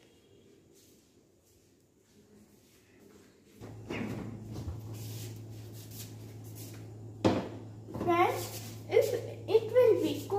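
A plate being put into a refrigerator, with one sharp knock about seven seconds in, over a steady low hum that starts partway through. Voices talk near the end.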